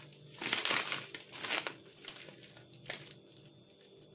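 Plastic packaging of a one-kilogram bag of frozen crab sticks crinkling as it is handled and turned over, loudest in the first two seconds, with a short rustle again near three seconds.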